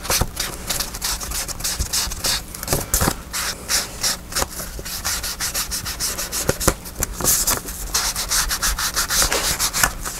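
Round-handled ink blending tool rubbed briskly back and forth along the edges of a kraft-paper envelope, many short scrubbing strokes a second.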